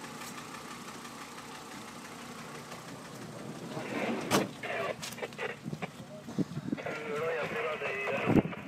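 Car engine idling steadily, then several people talking and calling out over it from about four seconds in, with a sharp knock just after the voices start.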